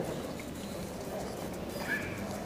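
Faint, steady hall ambience with distant, indistinct voices in the background, and one short faint sound near the end.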